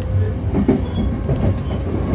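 Commuter train car running along the track, heard from inside the carriage by the door: a steady low rumble of wheels and running gear.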